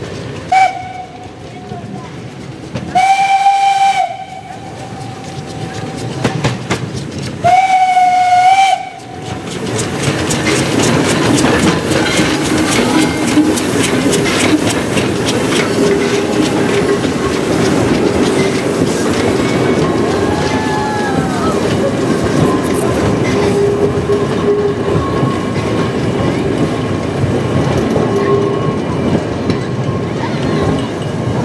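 A steam locomotive's whistle gives a short toot, then two long blasts about four seconds apart. From about ten seconds in, the locomotive and its wooden carriages roll past close by, with wheels clicking over the rail joints and squealing now and then.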